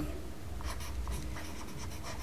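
A stylus writing on a tablet in short scratchy strokes, over a low steady hum.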